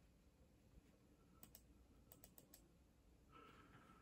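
Near silence, broken in the middle by a quick run of about six faint keystrokes on a computer keyboard.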